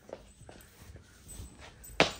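Faint footsteps of soft foam slip-on shoes on a laminate floor: a few light taps and scuffs.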